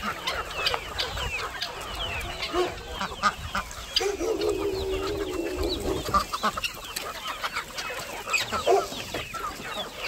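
A large mixed flock of free-range chickens, hens and roosters, clucking and calling all at once, with many short calls overlapping. About four seconds in, one longer held call lasts nearly two seconds.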